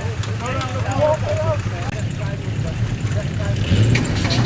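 A steady low engine drone under indistinct voices; near the end the sound swells as the Land Rover Defender 110's 200Tdi four-cylinder turbo-diesel, stalled after wading and suspected of having swallowed water, is cranked and starts up.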